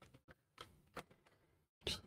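Faint, scattered clicks and taps, about five in two seconds, with the loudest near the end: a paintbrush and oil paints being handled at the palette.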